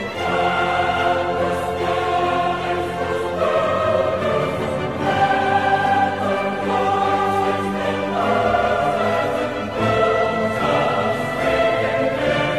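Classical choral music: a choir singing slow, held chords, changing chord every second or two.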